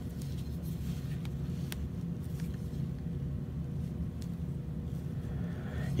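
A steady low hum, with a few faint light clicks as two small ESEE Izula fixed-blade knives are handled and turned over in the hands.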